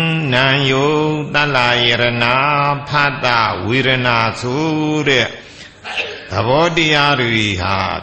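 A Buddhist monk chanting in Pali in a slow recitation, a single male voice holding long notes on a mostly level, low pitch, with a short break about five seconds in.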